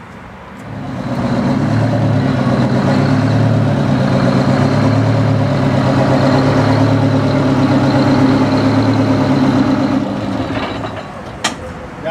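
A heavy truck engine running steadily at a constant speed, swelling up about a second in, holding for several seconds and fading away near the end, with a sharp click just after it fades.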